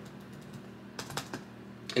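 Keystrokes on a laptop keyboard: a quick cluster of taps about halfway through and one more just before the end.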